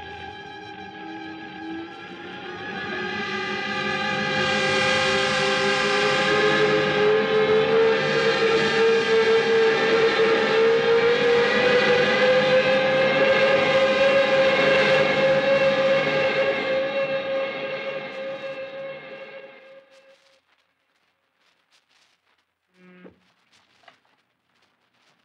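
Radio-drama sound effect of a stricken bomber going down: a slowly rising whine over a dense bed of sustained tones that swells to full loudness, holds, then fades out about twenty seconds in, leaving near silence.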